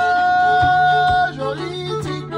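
Acoustic fiddle-and-guitar jam: a high note slides up at the start and is held steady for over a second before sliding off, over a steady low drone and a plucked, repeating accompaniment.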